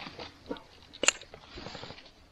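Scattered short splashes and knocks from a large trout being handled in shallow water at the bank, with one sharp click about a second in.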